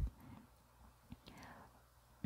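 A pause between spoken words: very quiet, with a faint breath and a single soft click about a second in.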